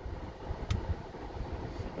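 Low, steady rumble of a car's interior, with one short click about two-thirds of a second in.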